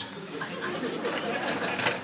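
Indistinct low voices murmuring, with no clear words, and a short click near the end.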